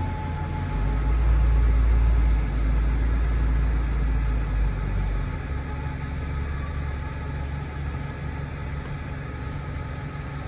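Single-decker diesel buses pulling away: a low engine rumble, loudest in the first few seconds, that then settles to a steadier hum.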